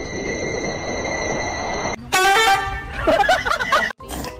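A steady hum with a faint high whine, then about halfway through a loud horn blast lasting about half a second, followed by a second of short, wavering, gliding calls.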